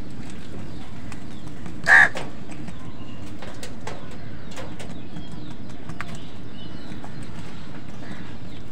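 One short, loud caw from a house crow about two seconds in, with a few faint clicks after it over a steady low background noise.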